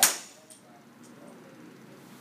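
A golf driver's clubhead striking a teed ball: one sharp crack right at the start, dying away within a fraction of a second.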